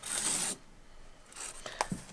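A Sharpie marker drawn across hessian along the edge of a quilting ruler: one stroke lasting about half a second, followed by a few faint small handling sounds.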